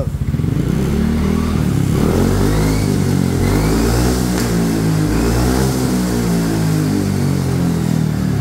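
Yamaha NMAX 155's single-cylinder scooter engine running through a black aftermarket SKR racing exhaust with a small round silencer, its pitch rising and falling as the throttle is worked. The exhaust note is not too shrill but still has a clear voice.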